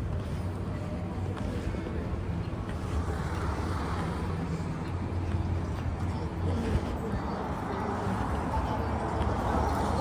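City street traffic: a steady low rumble of passing cars, swelling a little from about three seconds in.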